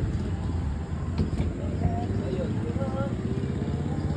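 Steady low rumble of a motor vehicle engine running on the road nearby, with faint distant voices.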